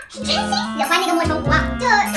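A woman talking in Mandarin over background music with steady held bass notes.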